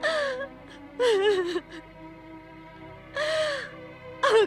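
A woman crying: three gasping, sobbing wails with breathy voice, over quieter background music holding a steady drone.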